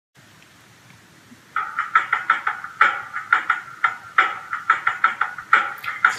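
A quick run of sharp knocks or taps starting about a second and a half in, about five a second in an uneven rhythm, beating out a groove.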